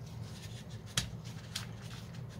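A 1-1/8 inch hole saw on a cordless drill biting into a dried bottle gourd's hard shell: a run of sharp crackles and clicks over a steady low hum, the loudest about a second in.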